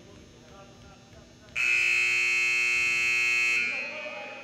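Gymnasium scoreboard buzzer sounding one loud, steady blast of about two seconds, starting suddenly and then dying away.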